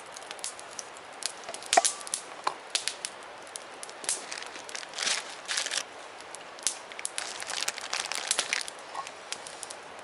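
Campfire of split wood crackling, with irregular sharp pops over a steady hiss.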